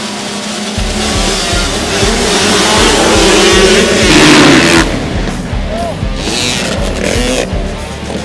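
A pack of small motocross bikes revving hard at the start gate and launching, their engines rising to a peak and cutting off abruptly about five seconds in. Background music with a steady drum beat runs underneath.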